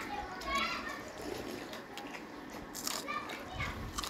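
Faint children's voices, with soft clicks and scrapes of hands eating rice from metal plates.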